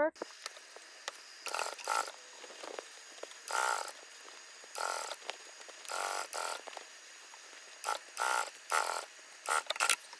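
Single-needle sewing machine stitching in a string of short runs, each about half a second, with a faint steady hum between them.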